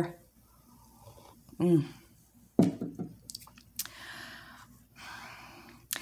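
A person sipping coffee: a couple of short voiced sounds, a few light clicks, then two drawn-in sips of about a second each.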